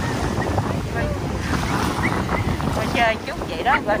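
Strong wind buffeting the microphone over breaking surf. About three seconds in, a small dog yelps and barks several times in short, high, rising cries.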